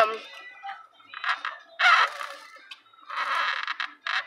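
A girl's breathy, hushed vocal sounds in three short bursts, with no clear words.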